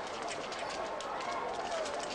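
Footsteps of a group walking together, an irregular patter of many steps, with faint voices in the background.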